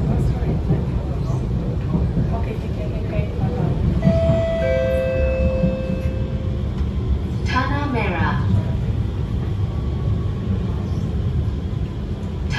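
Steady low rumble inside an SMRT R151 metro carriage, with a two-note electronic chime, higher note then lower, about four seconds in, and a brief sweeping tone a few seconds later.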